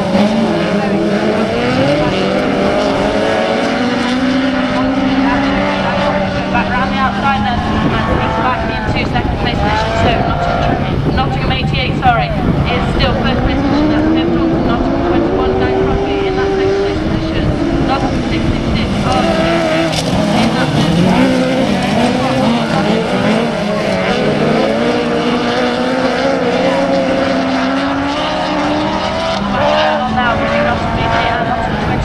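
Several autograss special buggies racing together on a dirt track. Their engines overlap, each rising and falling in pitch as the drivers accelerate and lift through the bends.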